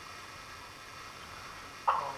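Low steady hiss from the television audio, then near the end a sudden short vocal sound, such as a yelp or squawk.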